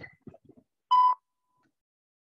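Morse code software sounding a dash: one steady electronic beep, about a quarter of a second long.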